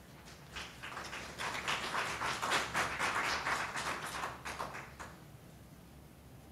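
Small audience applauding for about four and a half seconds, building up quickly and then dying away.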